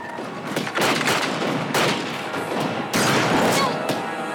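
Rifle gunfire in a firefight: a run of shots fired a fraction of a second to about a second apart, each with a ringing echo tail.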